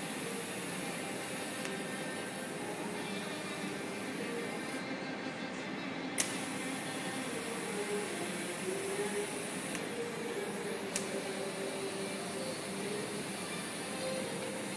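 TIG welding arc on stainless steel, a steady high hiss. The arc breaks off twice for about a second and restarts each time with a sharp click.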